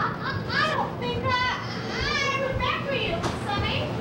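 A high, squeaky voice making wordless squeals that glide up and down in pitch.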